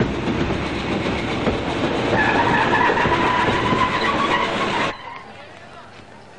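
A passenger train hauled by an Indian Railways WAG-5 electric locomotive runs into a station, a loud steady rumble with a high two-pitched whine coming in about two seconds in. The sound drops abruptly to quieter platform background about five seconds in.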